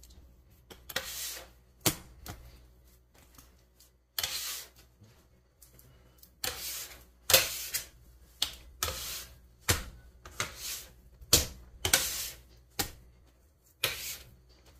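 Sticky bread dough being hand-kneaded on a countertop: an irregular series of wet smacks as the dough is lifted and slapped down, mixed with the scrape of a metal bench scraper gathering dough off the counter.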